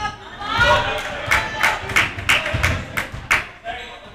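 A basketball dribbled on a hardwood gym floor, a run of thuds about three a second, with voices from players and spectators around it.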